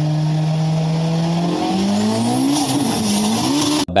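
Car engine sound effect: a steady engine note that rises in pitch and wavers as it revs about one and a half seconds in, with a hiss over it, cut off abruptly near the end.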